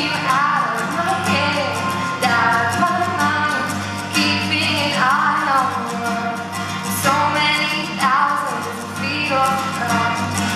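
A woman singing a melody while strumming a Yamaha acoustic guitar in a steady rhythm.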